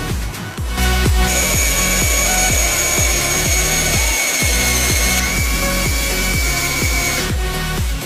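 Small cordless drill-driver running steadily with a high whine as a thin drill bit bores into particleboard, starting about a second in and stopping about a second before the end. Background music with a steady beat plays throughout.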